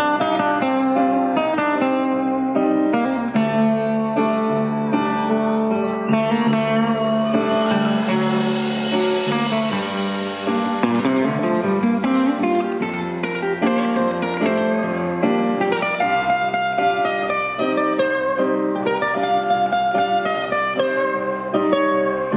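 Live amplified acoustic guitars picking the slow intro of a rock ballad, with notes ringing over held chords and keyboard underneath. A high hiss swells up in the middle seconds and then fades.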